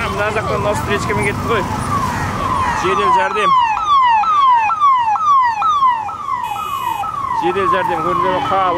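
Ambulance siren sounding a fast, repeating wail: each sweep falls in pitch and snaps back up, about two sweeps a second. It is loudest a few seconds in as the ambulance passes close, over the rumble of street traffic.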